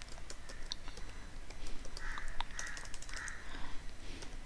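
Typing on a computer keyboard: scattered light keystroke clicks at uneven intervals.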